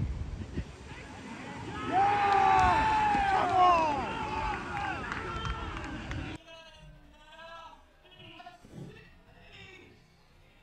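Several voices shouting at once on a football pitch, long overlapping calls that are loudest from about two to four seconds in. An abrupt cut about six seconds in leaves only fainter, distant shouts.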